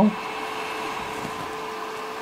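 Small electric fan running steadily: an even whir with a faint constant hum.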